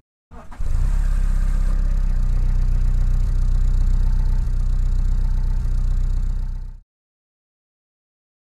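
An engine starts and settles straight into a steady idle, pulling inlet manifold vacuum for a brake servo. It cuts off suddenly near the end.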